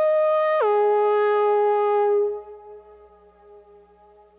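A single sustained electronic synthesizer note with a bright, buzzy tone steps down in pitch about half a second in and holds. It fades away after about two seconds, leaving only a faint hum.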